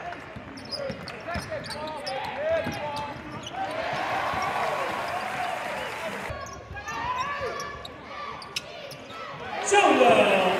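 Basketball bouncing on a hardwood court during live play, with players' voices and arena background noise, and one sharp smack late on.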